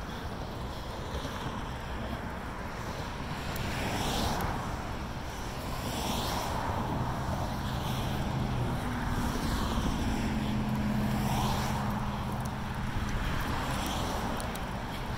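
Road traffic going by, with cars passing in swells of tyre and engine noise every few seconds, over wind on the microphone. A low engine drone joins in about halfway through and fades near the end.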